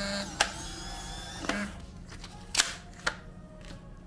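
Polaroid Lab instant printer's motor whirring briefly as it pushes out the exposed instant film, followed by a few sharp clicks and taps spread over the next few seconds.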